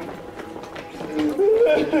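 A man's voice wailing in grief, rising in pitch in a drawn-out cry about a second and a half in.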